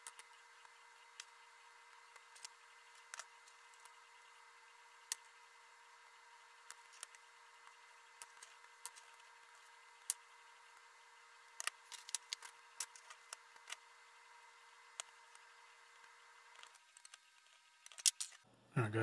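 Near silence with scattered small clicks and taps of a hex key, screws and metal printer parts being handled and fastened. Under them runs a faint steady hum that stops near the end.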